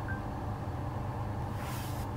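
Steady low hum inside a parked car's cabin, with a brief faint beep right at the start and a hiss swelling up near the end as the head unit's FM radio opens.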